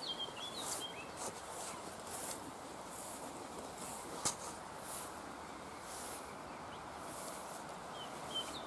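Footsteps swishing through short grass and clover at a slow walking pace, roughly one step every three-quarters of a second, over a faint steady outdoor background. A small bird chirps briefly at the very start, and there is a single sharp click about four seconds in.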